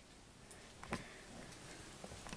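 Near silence with a couple of faint clicks, about half a second apart.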